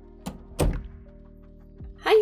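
Soft background music holding sustained notes, with dull thunks: a pair a little after the start, the second the loudest, and a lighter one near the end.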